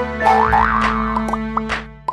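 Bouncy cartoon jingle for an animated logo outro, with springy boing effects that rise in pitch, fading out near the end.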